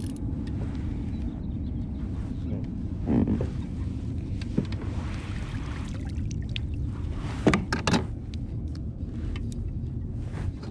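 A hooked bass splashing at the surface beside a fishing kayak as it is brought to the landing net, over a steady low background rumble, with two sharp splashes or knocks about three-quarters of the way through.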